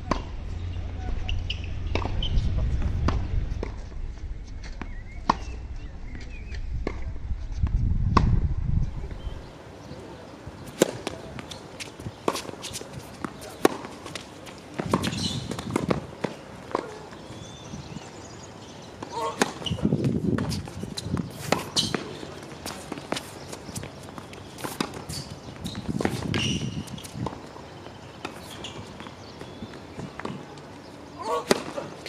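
Tennis balls struck with racquets, sharp pops traded back and forth in rallies, with bounces on a hard court. A low rumble underlies the first nine seconds or so.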